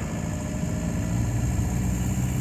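VW 1.9 ALH four-cylinder turbodiesel, heard from inside the cab, pulling under throttle from about 1500 rpm as the GTC2262 turbo builds boost.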